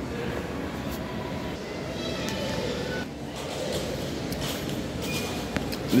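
Steady background hum of a busy mall food court, with faint distant voices.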